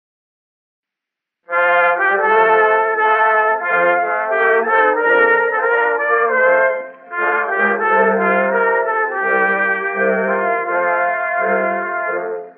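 Instrumental introduction of an early acoustic phonograph recording, likely an Edison two-minute cylinder from 1908, with brass carrying the tune. It starts after about a second and a half of silence and dips briefly about halfway through. The sound is thin and narrow, with nothing above the upper middle range, typical of acoustic-era recording.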